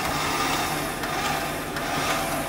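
Off-road vehicle engine running, a steady low drone under a wash of noise.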